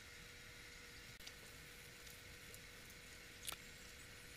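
Near silence: faint room tone with a steady low hum and a few soft ticks, the clearest about three and a half seconds in.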